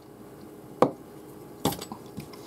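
A stemmed glass moved and set down on a tabletop: a sharp knock a little under a second in, then a few smaller knocks about a second later.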